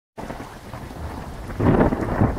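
Steady rushing noise like rain, with a low rumble like thunder that grows louder about one and a half seconds in. It starts after a split-second gap of silence.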